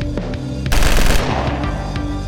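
Outro music with a steady electronic drum beat; about three-quarters of a second in, a loud crash rings out and fades over about half a second.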